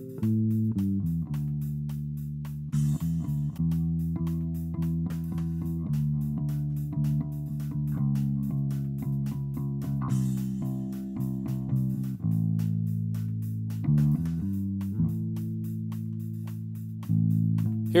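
Background music: a free-form bass line in A on bass guitar, single plucked notes ringing and fading one after another.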